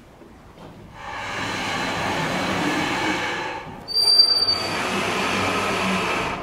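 Vertical sliding chalkboard panels rolling in their frame as they are pushed up. The sound comes in two long pushes of about three and two seconds, and a brief high squeal comes at the start of the second, about four seconds in.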